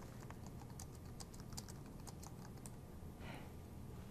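Faint typing on a computer keyboard: a string of light, irregular keystroke clicks as a word is typed.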